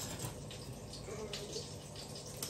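Quiet kitchen room noise with a steady low hum, and a few faint rustles and clicks as a plastic hotdog packet and a pair of scissors are handled.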